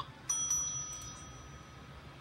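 A chrome counter service bell struck twice in quick succession by hand, ringing out and fading over about a second, heard through a TV speaker.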